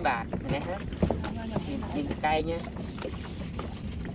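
Scattered light knocks and slaps as fish are handled in a boat's fish hold, over a low steady rumble of wind on the microphone.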